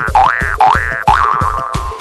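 Cartoon "boing" sound effect: three quick springy rising pitch glides, the last one held out, over background music with a steady beat.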